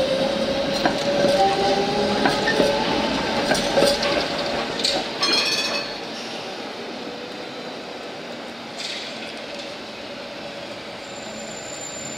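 Electric city trams running on street track, with steel wheels on rails and a steady whine from the running gear, louder through the first half. A short metallic ringing comes about five seconds in, then a quieter, steady rolling sound.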